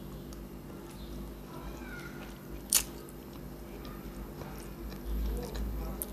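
Close-up sounds of a person chewing a mouthful of spaghetti, with faint wet mouth noises. There is one sharp click about halfway through and a dull low thump near the end.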